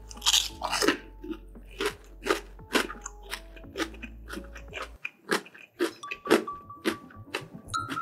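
Close-miked crunching of a crispy batter-fried mushroom being bitten and chewed. A loud bite comes in the first second, then steady crunches about twice a second.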